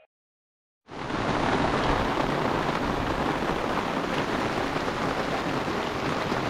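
Steady rain falling, starting suddenly about a second in.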